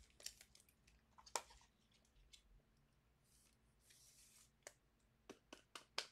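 Near silence broken by scattered faint clicks and two brief soft rustles of trading cards being handled.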